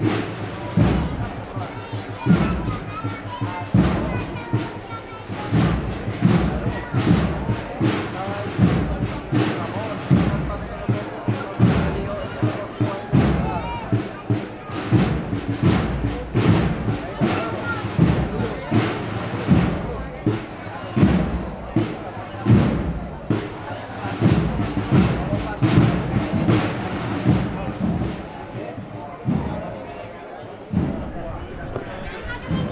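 Drums of a Sevillian cornet-and-drum procession band beating a steady, even march rhythm, with crowd chatter over it.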